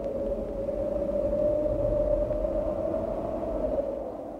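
A steady droning tone holding one pitch over a low rumble.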